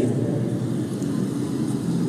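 A steady, even low rumble of open-air background noise, with no voice and no separate events.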